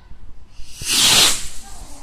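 Firework rocket launching: a short rushing hiss that swells and fades in under a second, about a second in.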